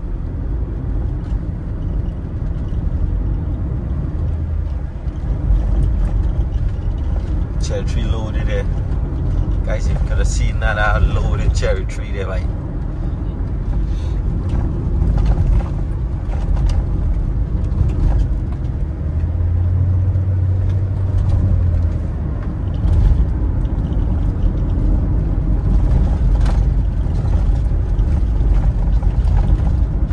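Steady low rumble of a car's road and engine noise heard from inside the cabin while driving. A voice speaks briefly about a third of the way in, and a deeper low hum rises for a couple of seconds just past the middle.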